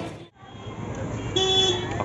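Busy street noise that cuts out abruptly just after the start at an edit, then comes back. A single short vehicle horn toot sounds about one and a half seconds in.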